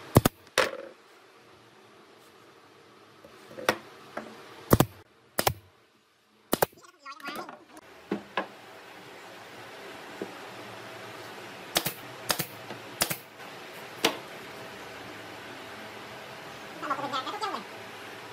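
Pneumatic brad nailer firing into hardwood cabinet panels: about a dozen sharp single shots, some in quick pairs. Near the end there is a brief wavering squeak.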